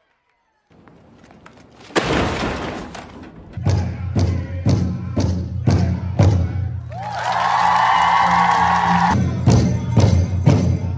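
Powwow drum group: a large drum struck in steady beats, about two a second, with men's voices singing low beneath it. A high held note joins for about two seconds near the end.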